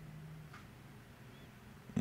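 Quiet room tone with a faint low hum in the first half second and a faint single click about half a second in.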